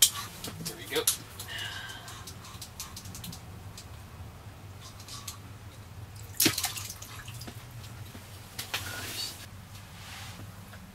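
Water splashing and dripping at an open hole in the ice, with several sharp knocks and clicks of handling. The loudest come at the very start and about six and a half seconds in.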